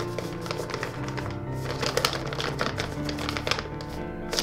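Background music with held notes, over a run of quick taps and crinkles from fingers feeling and squeezing a paper envelope.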